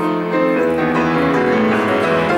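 Grand piano playing a classical piece, a flowing run of chords and melody notes with no break.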